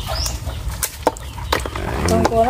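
Live rice-field crabs being handled in a plastic basin of water: a few sharp clicks and clatters of shell against shell and plastic, over a steady low rumble.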